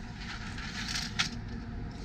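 Aluminium manual RV awning arm sliding down through its release latch, with scraping and a sharp metallic click a little over a second in.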